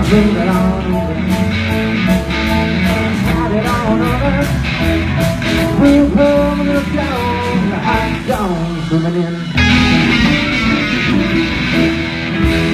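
Live blues-rock band playing: electric guitars over drums and cymbals with a steady beat. About eight seconds in, the low end drops away while a guitar note bends downward, then the full band crashes back in a second or so later.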